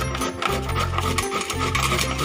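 Peeled cassava being grated on the metal blade of a plastic hand grater: repeated rasping strokes, back and forth. Background music with a steady bass line plays under it.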